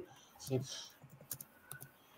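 Faint clicking of a computer keyboard being typed on, with a brief faint voice about half a second in.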